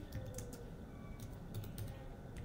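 Typing on a computer keyboard: a run of light, irregularly spaced key clicks as a short phrase is typed.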